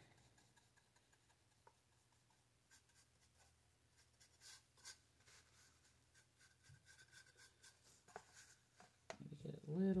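Faint, irregular scratchy strokes of a paintbrush brushing paint onto a wooden crate, several spread over the stretch.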